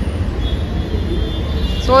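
Steady low rumble of outdoor background noise, with a voice starting to speak near the end.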